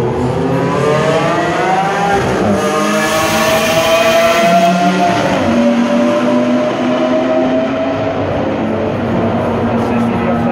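Several sports car engines accelerating along the track. The engine note climbs and drops back at upshifts about two and five seconds in, then holds a steady note in the second half.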